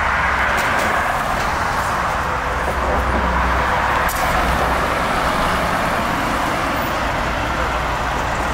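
Road traffic with a double-decker tour bus driving past close by: steady engine and tyre noise over a low rumble.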